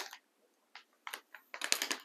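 Light clicking and rustling of gift items and wrapping being handled in a gift box: a few scattered clicks, then a quick run of them near the end.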